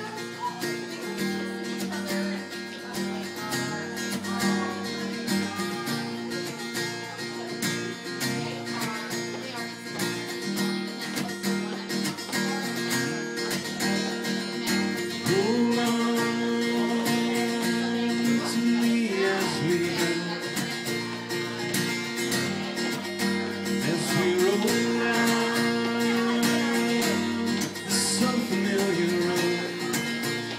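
Two acoustic guitars strumming a song intro together. About halfway in, long held wordless vocal notes that slide up into pitch come in, and they return near the end.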